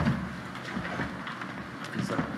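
Lecture-hall background noise between speakers: a steady hiss with a few faint clicks and shuffling sounds.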